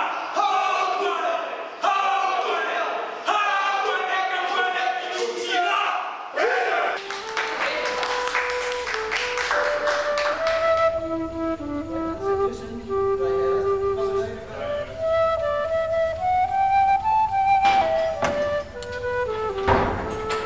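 Several voices calling out together for the first six seconds or so. From about seven seconds in, a flute plays a slow, stepping melody of held notes over a low steady hum.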